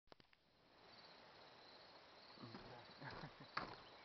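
Footsteps on a wooden boardwalk's planks, coming close from about halfway through, with one sharp, loud footfall shortly before the end. A faint, steady high insect chirring runs underneath.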